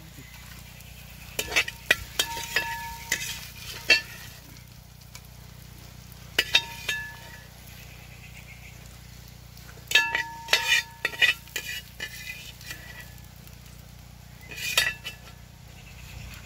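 Steel skimmer scraping and clinking against a wide steel pan and a glass bowl as fried chicken pieces are scooped out, in four bursts of scrapes and knocks, some hits leaving a short ring from the metal.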